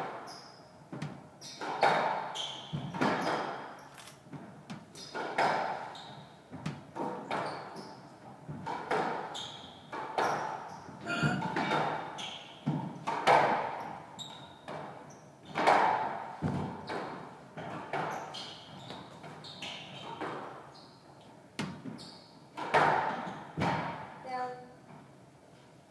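A squash rally: the ball struck by racquets and smacking off the court walls, a sharp hit every second or so ringing in the hall, with brief squeaks of court shoes on the wooden floor between hits.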